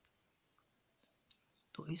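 Near-silent room tone broken by one short, sharp click about a second and a half in, then a man's voice starts speaking near the end.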